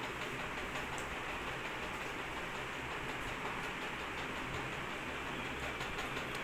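Steady background hiss at an even level, with no distinct sounds standing out from it.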